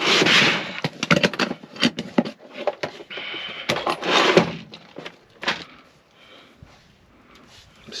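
Hard plastic tackle box being opened and its tray lifted out: a busy run of plastic clicks and clatters, with lures and tools rattling in the compartments, settling down after about five seconds.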